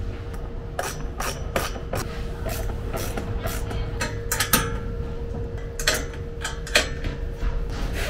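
Bolts on a metal panel mount being tightened with hand tools: a string of irregular sharp metallic clicks and taps, several a second.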